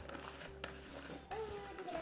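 A person's voice speaking, mainly in the second half, over a steady low hum, with a couple of faint short clicks.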